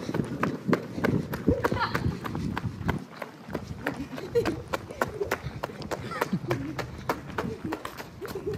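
People running on pavement: quick footfalls, about three to four a second, with voices over them.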